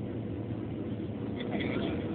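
Steady cabin noise of a Boeing 737-700 on short final: engine and airflow rumble heard from a window seat, with a faint steady hum.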